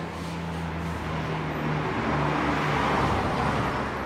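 A steady low mechanical hum with a held droning tone, growing louder in the second half.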